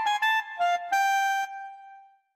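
Yamaha Tyros3 keyboard's Super Articulation standard clarinet voice playing a quick run of short, detached (staccato) notes, with little grace notes added automatically to the detached notes. The last note is held for about half a second and fades out near the end.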